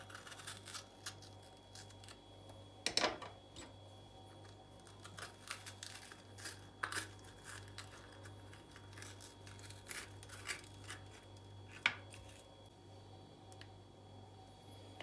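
Small paring knife cutting into red kapya peppers on a wooden cutting board, with the peppers handled and pulled open: faint, scattered crisp snaps and clicks, the loudest about three seconds in and again near twelve seconds.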